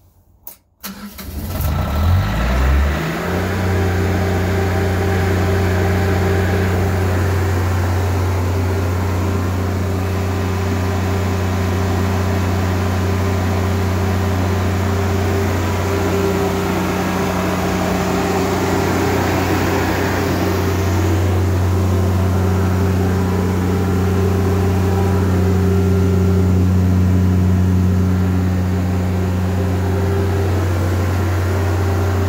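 Honda EB12D silent diesel generator being started in winter: about a second in the diesel cranks and catches within a couple of seconds, then settles into a steady, even run with a low hum.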